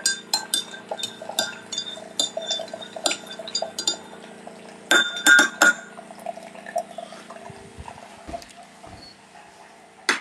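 Cups and cutlery clinking in a run of light clinks, with three louder clinks about five seconds in. Under them runs a steady machine hum that stops about seven and a half seconds in.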